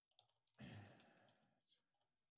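A faint breathy sigh, a single exhale that sets in just over half a second in and fades away over about a second, with a few faint keyboard clicks around it.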